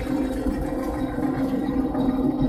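YuMZ tractor's diesel engine running steadily under way, a low rumble with a constant hum.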